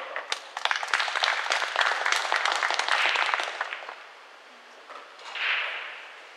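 Audience applauding, a dense patter of hand claps that swells and then dies away after about three and a half seconds, followed near the end by a brief rushing noise.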